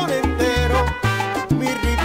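Salsa band playing an instrumental passage with no vocals, a bass line stepping between held notes under melodic lines and percussion.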